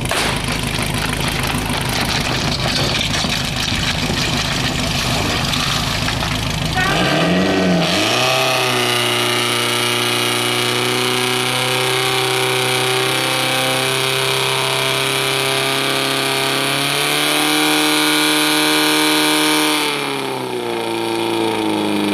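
Portable fire pump engine running roughly at first, then revving up about seven seconds in and holding a high, steady speed, with a small change in revs later and a dip near the end.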